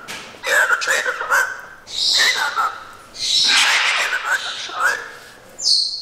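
Soft, unintelligible speech-like chatter in three short spells, breathy and hissy, followed by a brief high whistle-like tone near the end.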